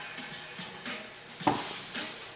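Vodka pouring from a bottle into a stainless-steel cocktail shaker, then a sudden knock of a glass bottle being handled about one and a half seconds in, with a smaller click near the end.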